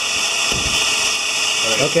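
Electric motor of a ball-pickup prototype running steadily, spinning a shaft of three roller wheels with an even high-pitched whir.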